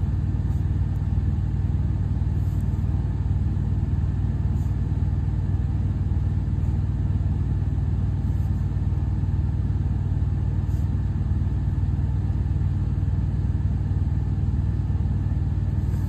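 A steady low rumble like a running engine, unchanging throughout, with a few faint light ticks now and then.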